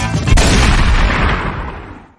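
The end of an intro music track: a very loud gunshot sound effect hits about a third of a second in, cuts the guitar music off, and dies away over about a second and a half.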